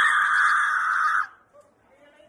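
A young man's voice letting out one loud, high, held scream-like note, lasting just over a second and cutting off suddenly, followed by faint background noise.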